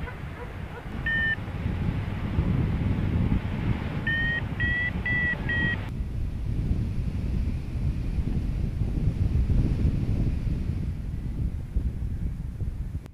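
Wind buffeting the microphone in flight as a steady rumble, with a hang-gliding variometer beeping: one short beep about a second in, then four quick beeps, slightly rising in pitch, between about four and six seconds in, the vario's signal that the glider is climbing in lift.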